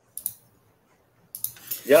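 A few light clicks from a computer keyboard, separated by quiet gaps, then a man says "yeah" near the end.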